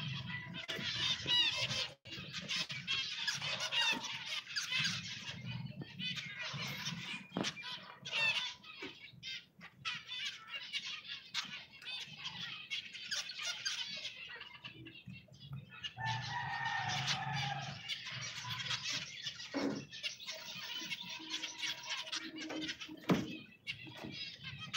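A flock of aviary finches chirping and calling, many short high calls overlapping almost without a break.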